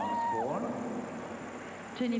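A young woman's voice draws out one high, held vocal sound that drops away about half a second in. Quieter background noise follows.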